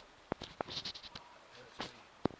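A few sharp metallic clicks and taps from hands and a spanner working at the engine's oil pressure switch fitting, two close together about a third of a second in and another near the end, with a brief hiss between them.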